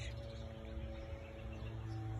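A faint steady low hum with a few steady higher tones over soft background noise, with no other distinct sound.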